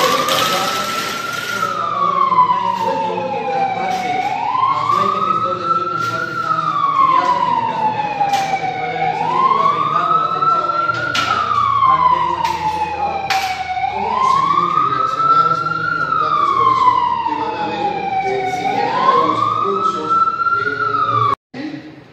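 Ambulance siren wailing. Each cycle rises quickly in pitch, falls slowly, and repeats about every five seconds. It cuts off suddenly near the end.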